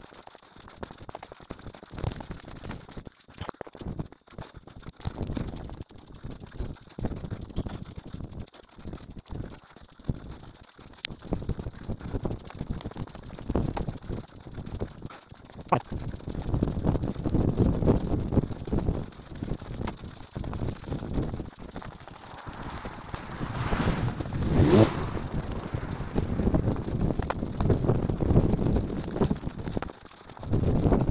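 Wind buffeting the microphone, an irregular low rumble that grows stronger in the second half, with two brief louder bursts late on.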